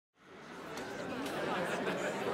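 Many overlapping voices chattering at once, with no single voice standing out. The babble fades in from silence and grows steadily louder.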